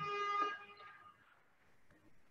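A brief steady tone with many overtones, held for about half a second and then fading out.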